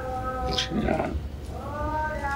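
A voice singing drawn-out held notes: one long phrase fades about half a second in, a short breath follows, and another long held note begins about 1.4 seconds in.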